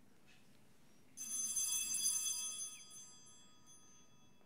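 Small altar bell rung about a second in, a bright ringing that fades away over a couple of seconds, marking the elevation of the chalice at the consecration.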